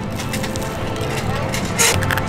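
A bite into a churro topped with pie-crust pieces, then chewing: a run of small crisp crackles, with a short breathy rush near the end, over a low steady background hum.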